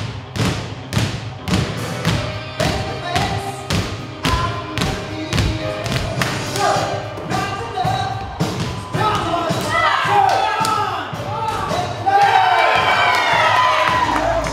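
Basketballs bounced in unison on a wooden stage floor, about three bounces a second, with music behind. In the second half the bouncing breaks up and high sliding squeaks or cries rise and fall over it, loudest near the end.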